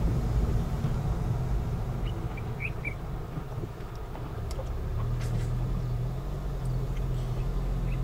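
Car driving at low speed: a steady low engine and road rumble. The engine hum firms up about halfway through. A few faint short chirps come around two to three seconds in.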